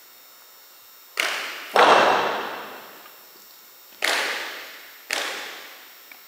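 Four sharp knocks from a drill team's precision drill, each ringing out with a long echo in the large gym. The first two come close together about a second in, and the second of them is the loudest. The other two follow near the end.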